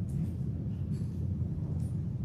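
A pause filled by a low, steady rumble of room noise, with only a few faint soft sounds above it.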